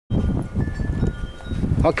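Wind buffeting the camera's microphone: an uneven, gusting low rumble, with a word of speech at the very end.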